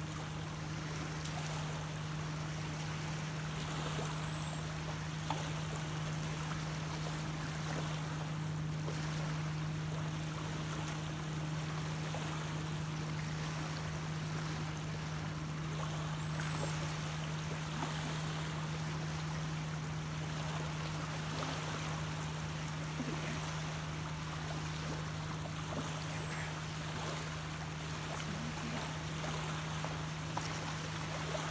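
Small waves lapping and washing on a sandy lake shore, a steady watery hiss. A steady low hum runs underneath throughout.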